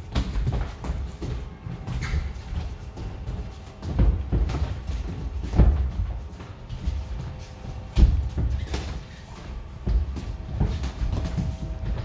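Gloved punches landing in boxing sparring: irregular thuds, the loudest about four, five and a half and eight seconds in.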